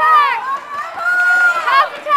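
Volleyball players' high-pitched voices shouting and calling out in quick succession on court, with one call drawn out near the middle.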